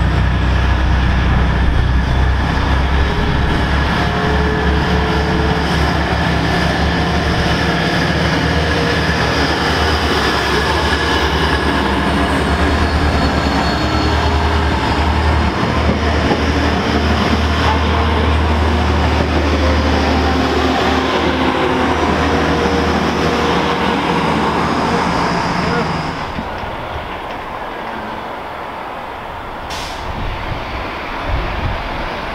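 Class 180 diesel multiple unit running through the station: a loud, steady low rumble of its underfloor diesel engines and wheels on the rails. It falls away near the end as the train clears.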